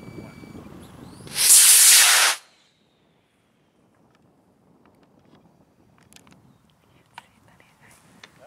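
Aerotech F67-6 model rocket motor firing at liftoff: a loud hiss lasting about a second, starting about one and a half seconds in and cutting off suddenly at burnout.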